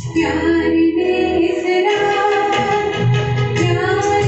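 A woman singing a Hindi film song through a handheld microphone, holding long notes over a steady keyboard accompaniment.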